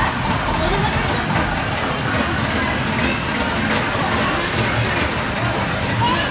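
A steady, dense background of indistinct voices mixed with some music.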